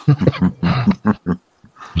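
A man imitating a dog: a quick string of short growling, barking vocal bursts over the first second and a half, as a mock Doberman attack.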